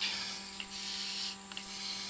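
Low, steady electrical hum with a faint hiss from the sewer inspection camera's recording system.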